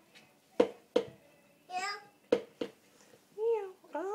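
A toddler's wordless vocal sounds, with two pairs of sharp knocks, the loudest sounds, about half a second and two and a half seconds in.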